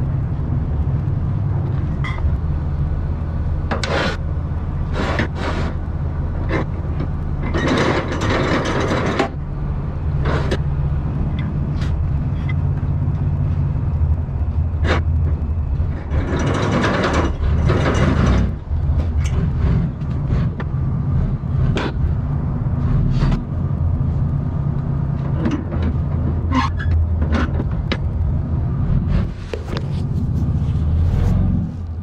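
Forklift engine running steadily with a low rumble as it works slowly toward the flatbed, with scattered knocks and clanks. Two louder bursts of rushing hiss come about 8 and 17 seconds in.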